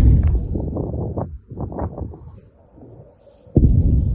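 Two distant missile explosions, heavy booms that rumble on and fade. One hits right at the start, the second about three and a half seconds in.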